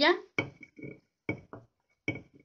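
A spoon scraping and tapping chopped cilantro and onion out of a clay dish into a glass bowl of salsa. It comes as a handful of short clinks and knocks, a few of them ringing briefly.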